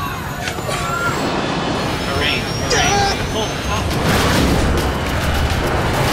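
Dramatized airliner crash-landing heard from inside the cabin: a loud, continuous rumble and rattling of the airframe striking the ground. Voices cry out about two seconds in, and a dense clatter of impacts builds through the second half.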